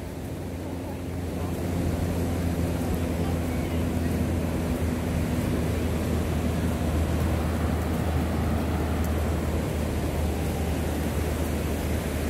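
Steady rush of ocean surf breaking on the beach, with a low wind rumble on the microphone.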